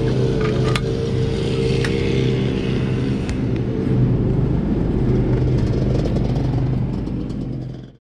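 1983 Honda CR480R's two-stroke single-cylinder engine idling steadily, with a couple of light clicks in the first two seconds. The sound fades out just before the end.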